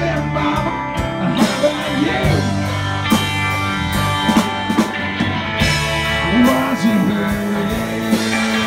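Live rock band playing an instrumental stretch between vocal lines: guitar with sliding, bent notes over bass and drums.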